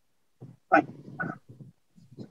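A man's voice briefly saying "fine" over a video-call line, in a few short broken syllables with quiet between.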